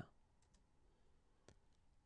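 Near silence with a faint computer mouse click about one and a half seconds in, as the slide is advanced to its next line, plus a few fainter ticks.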